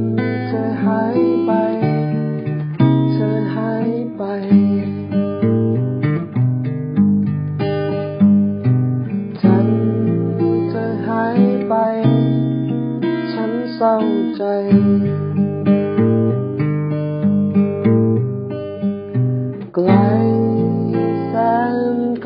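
A man singing a song in Thai to his own strummed acoustic guitar.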